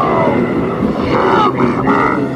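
A loud, rough wild-animal call used as a sound effect, its pitch sweeping up and down.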